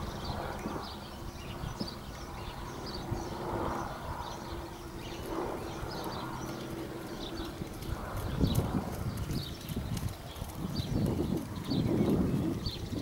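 Hoofbeats of a horse trotting on a sand arena, a steady even rhythm of soft strikes. Louder, rougher noise comes in from about eight seconds in.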